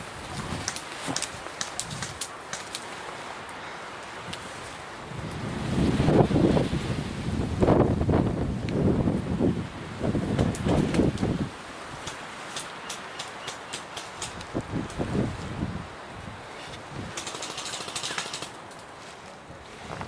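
Leaves and branches rustling, with twigs crackling, as someone pushes through dense scrub. A heavy, irregular low rumbling on the microphone runs from about five to eleven seconds in, and sharp little snaps come near the middle and near the end.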